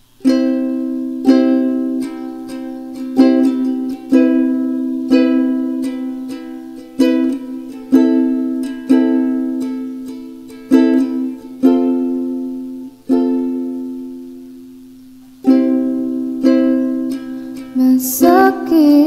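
Opening of an acoustic song: chords on a plucked string instrument, struck about once a second and left to ring out, with one longer ringing chord past the middle.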